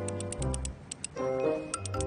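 Combination dial of an old safe being turned by hand, giving a quick, uneven run of clicks as a code is dialled in, over background music with sustained tones.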